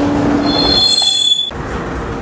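Freight train wheels squealing on the rails: a steady high screech that joins a lower steady tone about half a second in, then cuts off abruptly about a second and a half in.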